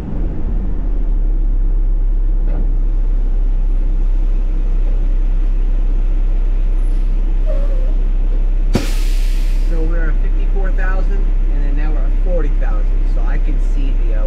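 Garbage truck engine running steadily, heard from inside the cab. About nine seconds in comes a short, sharp air hiss: the truck's air brakes as it comes to a stop.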